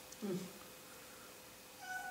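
A cat mewing faintly: a short low mew just after the start, then a thinner, steady-pitched mew near the end.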